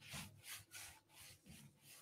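Faint, soft strokes of paintbrushes spreading paint, about three brushstrokes a second.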